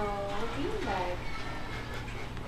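A tortoiseshell cat meowing: three short calls in the first second or so, one rising and falling in pitch.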